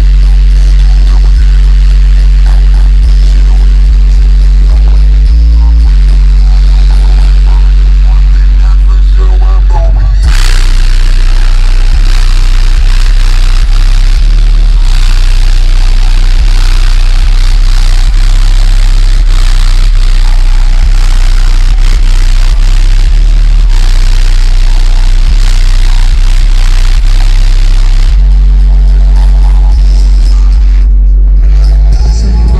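Deaf Bonce car subwoofer playing deep bass tones at extreme volume, distorted on the microphone. The tones hold steady with a brief step in pitch about five seconds in; from about ten seconds in until near the end, a loud, rough noise covers them.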